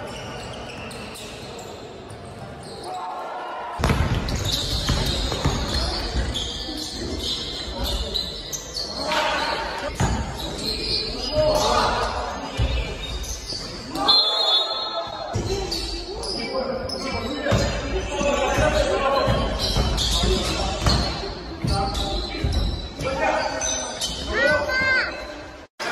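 Live basketball game sound in a reverberant gym: a ball bouncing on the court among players' voices, busier and louder from about four seconds in.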